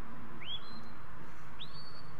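Two shepherd's whistle commands to a working sheepdog, about a second apart: each a quick upward sweep that levels off into a held note, the second pitched higher.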